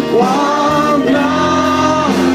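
Live worship music: a band playing with singing, the voices holding long, steady notes.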